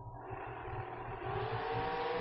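Junior dragster engines accelerating off the drag strip's starting line, growing steadily louder with the pitch climbing slowly.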